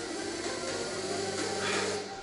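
Quiet background music under a steady low hum.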